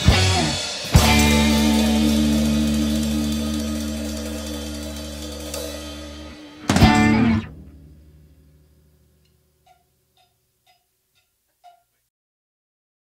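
Rock band with electric guitars, bass and drum kit ending a song. A final chord struck about a second in rings out with cymbals and fades slowly, and a last short stab comes near seven seconds. The sound then dies away to near silence, broken by a few faint ticks.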